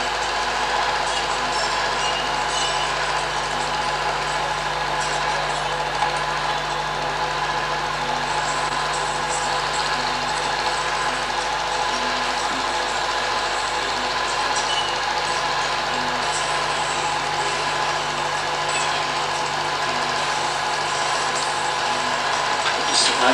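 Home-movie film projector running steadily, its motor and film transport making a continuous mechanical whir with a few steady tones.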